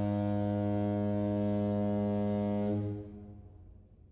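A long, low, horn-like tone, steady in pitch, that starts to fade out about three seconds in.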